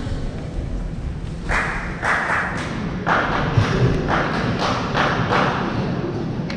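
Hand clapping close by, about two claps a second, starting about one and a half seconds in, over the low rumble of a large hall.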